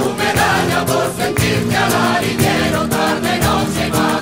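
Choir singing a sevillanas-style devotional romería song over instrumental accompaniment with a steady rhythm.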